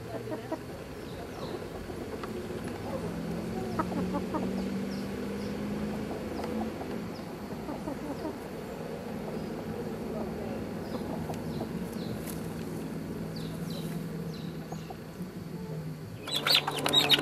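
Backyard chickens, a rooster and several hens, clucking as they forage, with short faint high chirps scattered through.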